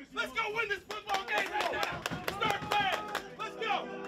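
Football players and coaches shouting over one another in a locker room, with sharp hand claps from about a second in.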